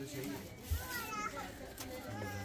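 Indistinct background chatter of several voices, not the main speaker, with a short soft thump under a second in.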